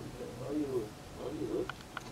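A pigeon cooing: low, soft hoots in two short phrases.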